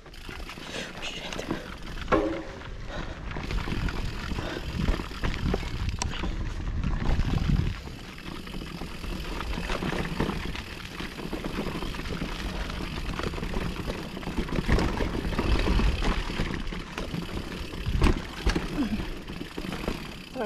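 Mountain bike rolling down a dirt trail: tyre and chain rattle under steady wind rush on the microphone, with a few sharp knocks from bumps, the loudest near the end.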